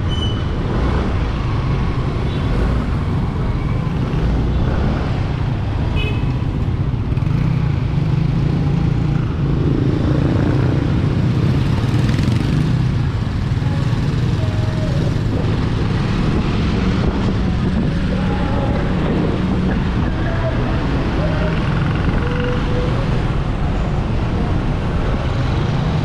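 Motorcycle riding through town traffic: a steady low drone of engine, wind and road noise, swelling a little about ten seconds in. A couple of brief high beeps near the start and about six seconds in.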